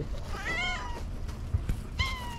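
Long-haired cat meowing once, a high call that rises and then falls over about half a second; a second meow starts right at the end.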